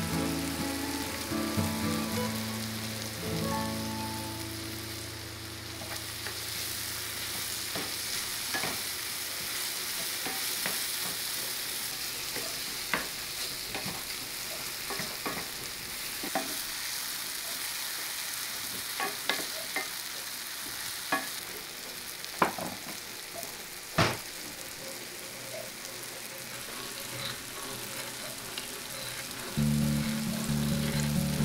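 Apple slices sautéing in butter in a cast-iron skillet: a steady sizzle, stirred with a wooden spoon, with a few sharp knocks of the spoon against the pan. Soft background music fades out over the first few seconds and comes back at the very end.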